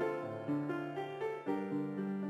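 Background music: a keyboard instrument playing a steady melody of separate notes, a new note every half second or so.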